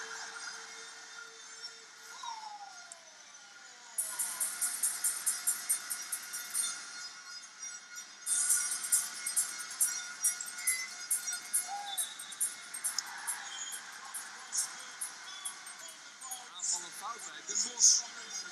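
Basketball arena crowd noise that turns into fast, rhythmic clapping about four seconds in, pausing briefly and resuming louder about halfway through.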